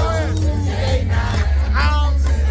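Loud music with a deep, steady bass, and voices over it near the start and again near the end.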